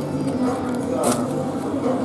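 A cardboard pizza box lid being opened, with a short papery scrape about a second in, over voices talking in the background.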